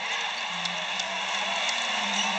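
Steady murmur of an arena crowd at a basketball game, with a few faint sharp ticks from the court.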